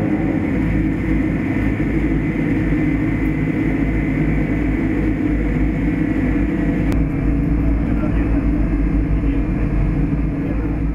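A steady, loud low rumble of background noise with indistinct voices mixed in. The sound changes abruptly about seven seconds in.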